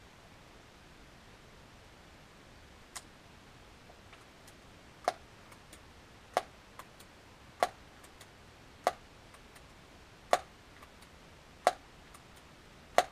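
Daisy PowerLine 901 multi-pump air rifle being pumped: a sharp click at each stroke of the forend pump lever, six of them about a second and a quarter apart, with fainter clicks of handling between.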